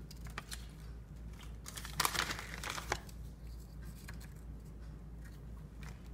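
Plastic bag of Fritos corn chips crinkling as chips are taken out, in short rustling bursts that are loudest about two to three seconds in.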